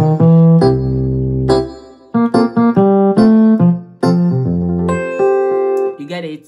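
Yamaha keyboard's electric piano voice playing a chord progression, with left-hand bass notes under sustained chords, demonstrating a different bass-line style over the same progression.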